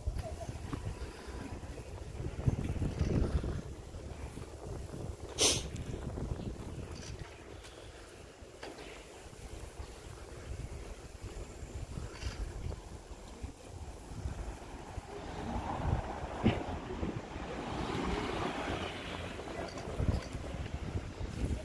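Wind buffeting the microphone of a handheld camera on a moving bicycle, an uneven low rumble, with the ride's rattle and one sharp click about five and a half seconds in. A broader hiss swells over the last few seconds.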